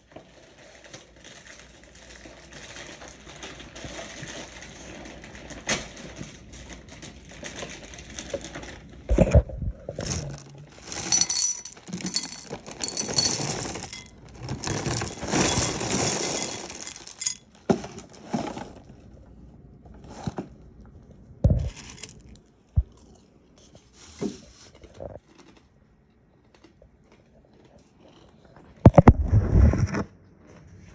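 A clear plastic bag crinkling and rustling in bursts as granola clusters are poured from it into a ceramic bowl, with small clinks as pieces land. Near the end there is a heavy thump.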